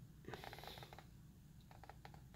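Near silence broken by faint handling noise: a short soft rustle about a quarter second in and a few light clicks near the end.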